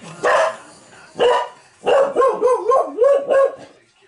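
A dog barking in two short bursts, then a longer run of wavering barks about two seconds in. It is alert barking at a household noise she takes for someone at the door.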